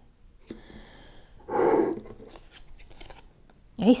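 Tarot cards being handled: papery rustling and sliding as a card is drawn from the deck and turned over, with a louder rub about halfway through and a few light clicks after it.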